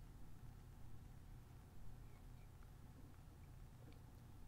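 Near silence with a faint steady low hum from a microwave oven running.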